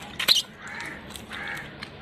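A crow cawing twice, two short arched calls a little under a second apart, with a couple of sharp clicks near the start.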